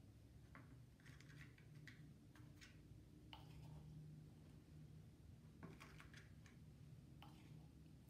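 Faint scrapes and taps of a spoon scooping baking soda into a small jar, a few scattered clicks over a steady low hum.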